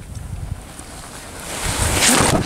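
Wind buffeting the microphone as a low rumble. Near the end a rising hiss of skis scraping across packed snow grows as a skier passes close.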